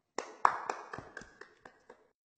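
A quick run of sharp taps, about four a second, growing fainter.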